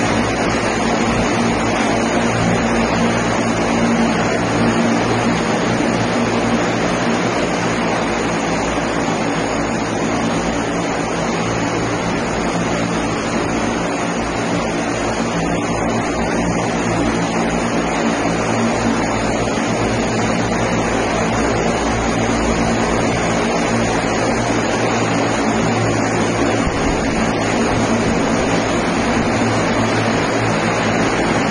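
Propellers of a single-seat electric multirotor passenger aircraft running steadily while it hovers: a loud, even rushing noise with a steady low hum of layered tones.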